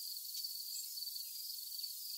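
A steady high-pitched insect trill over faint outdoor hiss, with one faint high bird chirp about three-quarters of a second in.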